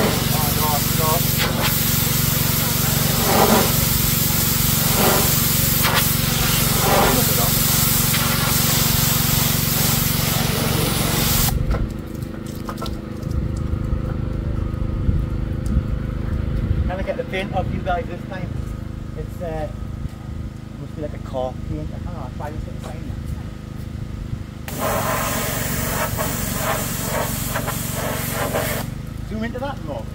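Pressure washer lance spraying water onto a metal road sign: a loud, steady hiss over a low, even hum from the machine. The spray stops a little over a third of the way in, leaving only the hum for about thirteen seconds, then starts again near the end.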